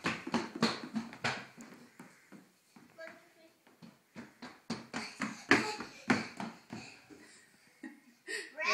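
A small child's quick footsteps on a hardwood floor, a series of short light thumps, with small children's voices mixed in.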